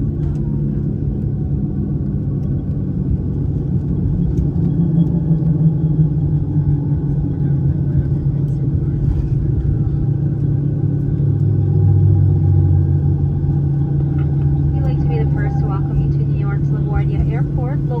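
Steady low rumble of a jet airliner heard from inside the cabin, engine and wheel noise with a constant hum, as the plane rolls along the runway after landing. Near the end a cabin announcement starts over it.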